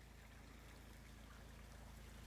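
Near silence: faint steady low hum with light outdoor hiss.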